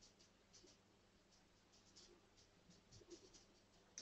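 Near silence: faint room tone with a few scattered, very faint ticks.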